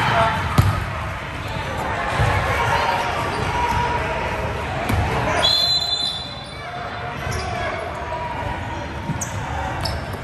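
A basketball bouncing on a hardwood gym floor in irregular thumps as players dribble, over a background of voices from players and spectators. A brief high squeak comes about five and a half seconds in.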